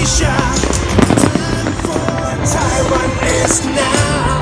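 Show music accompanying a fireworks display, with firework bursts and crackle mixed in. The sharpest bang comes about a second in.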